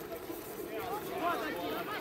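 Faraway voices of players and onlookers calling out at a football match, in short scattered shouts over a faint outdoor hiss.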